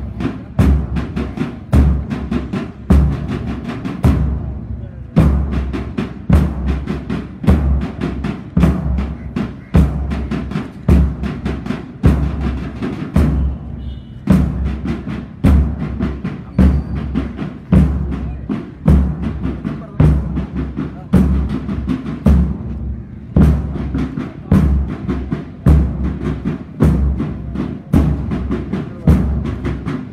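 Marching drums beating a steady rhythm over a deep bass drum, in phrases broken by a short pause roughly every nine seconds.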